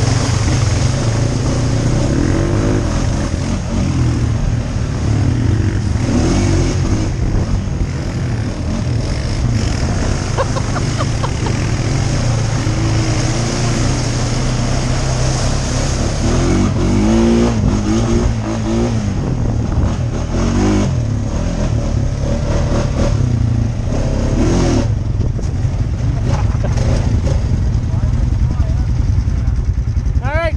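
ATV engine running under a rider on a trail, a steady low rumble with the revs shifting now and then.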